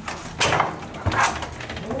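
Hotel room door being unlocked with a key card and pushed open, with a few sharp clicks and knocks from the lock and latch.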